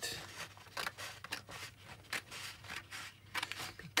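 Scissors cutting through a printed paper sheet: an irregular run of short snips as the blades work along the sheet.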